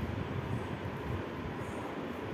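Ballpoint pen writing on a notebook page, heard over a steady low rumbling background noise.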